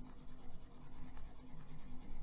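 Soft wax-based Caran d'Ache Luminance coloured pencil scratching lightly across paper in short, irregular colouring strokes.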